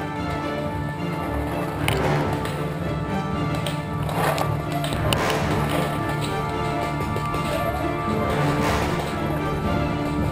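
Background music with steady held notes, and a few sharp cracks through it.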